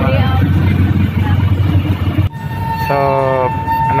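Jeepney engine rumbling steadily, heard from inside the passenger cabin. About two seconds in, the rumble drops sharply and a steady high, single-pitched tone like a horn is held to the end.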